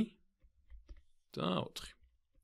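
A narrator's voice saying a short phrase in Georgian about halfway through, with a few faint clicks just before it.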